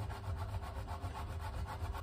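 Hard Pecorino Romano cheese grated by hand on a flat stainless steel grater: quick repeated rasping strokes.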